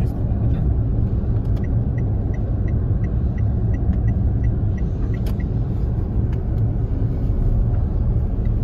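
Steady low road and engine rumble heard inside a moving car's cabin. A light, regular ticking about three times a second runs from about one and a half to four seconds in.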